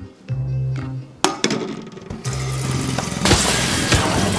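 Background music with a repeating bass line, joined about a second in by sharp clinks and crashes, then a loud, rushing clatter that builds through the second half.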